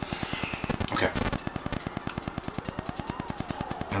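Steady, rapid crackling clicks, about a dozen a second: static from the recording microphone. A faint tone rises and falls about three seconds in.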